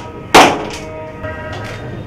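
A coconut smashed once against a stone in a metal tray: a single sharp crack about a third of a second in, with a short ringing after it. Steady background music runs underneath.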